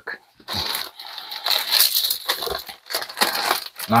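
Plastic mailer bag crinkling and rustling in irregular bursts as an item is packed into it.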